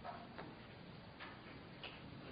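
Quiet room tone with a few faint, irregularly spaced clicks, about four in two seconds.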